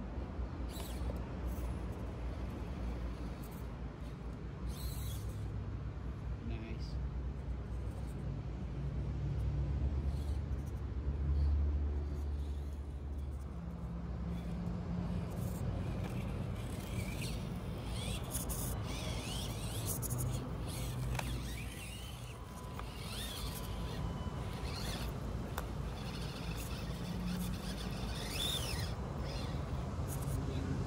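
Axial SCX24 micro RC rock crawler driving over rocks, its small electric motor and drivetrain whirring as it climbs, loudest about ten to thirteen seconds in.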